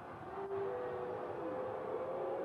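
Several steady held tones overlapping like a chord, the first coming in about a quarter second in and a higher one joining about half a second in, over an arena's background noise.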